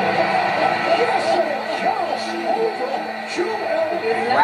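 Audio of a basketball highlight video: background music with an indistinct voice over it.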